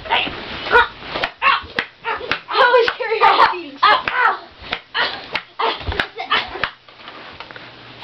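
Young voices yelling in a mock fight, with a few sharp slaps and thuds from the scuffle; it calms down about two-thirds of the way in.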